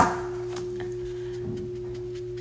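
A sharp tap of a small object knocking on a tabletop right at the start, over a steady low hum held at one pitch, with a few faint ticks of small items being handled.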